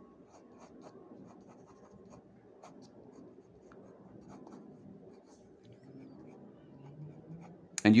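Faint, quick pencil strokes on drawing paper as the hair is sketched in, many short strokes in an irregular run.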